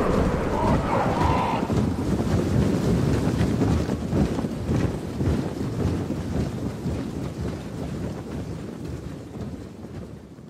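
An orc army marching: a dense low rumble of many heavy footfalls tramping out of step, which fades out over the second half.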